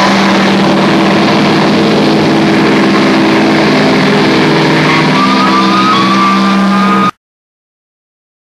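Doom metal band's distorted electric guitars and bass holding one loud sustained chord, with a thin high whine creeping in during the last couple of seconds. The sound cuts off suddenly about seven seconds in.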